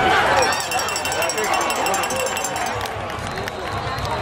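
Many overlapping voices of a football crowd chattering, with no single voice standing out.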